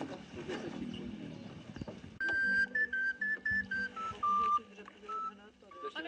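A short melody played on a small end-blown flute of the recorder type: a run of about a dozen clear, high held notes that step up and down in pitch, starting about two seconds in.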